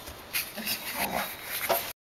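A dog whimpering in several short bursts, cut off abruptly near the end.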